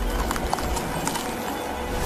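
Soundtrack music with a string of sharp, irregular clicking, crackling hits over a low rumble, as an icy energy aura builds.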